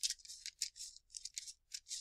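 Scissors cutting through a strip of lined notebook paper: a fast run of short, faint, crisp snips, several a second, as the blades close along the paper.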